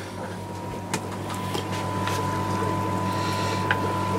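Steady low electrical hum of aquarium equipment running in a fish room, with a thin high steady tone coming in about a second in and a few faint clicks.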